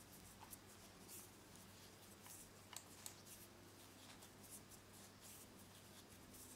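Near silence: faint rustling of size 10 cotton thread being worked into double stitches on a tatting needle, with a few soft ticks.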